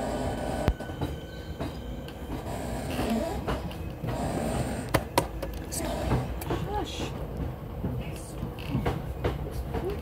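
Electric passenger train running, heard from inside a carriage: a steady low rumble with a few sharp clicks, the loudest about a second in and about five seconds in.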